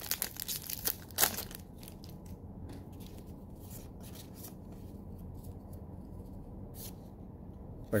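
Foil Magic: The Gathering set booster wrapper being torn open and crinkled for the first second and a half. After that only a few faint rustles of the cards being handled are heard, over a low steady hum.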